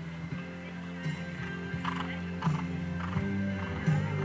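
Horse's hooves striking the sand footing at a canter, a beat roughly every half second from about two seconds in, over steady background music.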